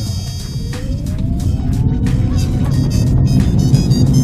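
Chevrolet Spark EV accelerating hard, heard from inside the cabin: the electric drive's whine rises steadily in pitch over a low rumble from the tyres and road.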